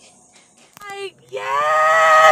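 A woman yells with excitement: a brief cry about three-quarters of a second in, then a loud, long, high-pitched yell held on one note.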